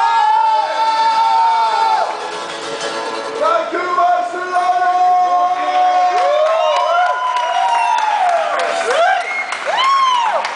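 An acoustic band of mandolin and acoustic guitars plays as the players and crowd hold long shouted or sung notes and let out whoops. Cheering from the onlookers runs through it.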